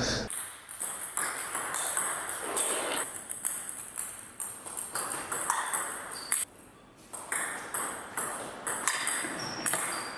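Table tennis ball being played back and forth, clicking sharply off the bats and the table several times a second. There is a short break in play about six and a half seconds in, and then the rally starts again.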